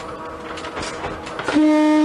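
Kanbara Railway's Moha 41 electric railcar running over jointed track with a faint clatter from the wheels. About three-quarters of the way in, its horn gives one loud, steady blast.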